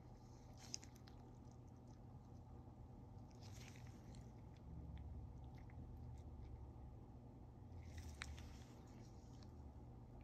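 Near silence with faint handling noise: a few soft ticks and two brief quiet rustles, one a few seconds in and one near the end, as a microscope is being focused.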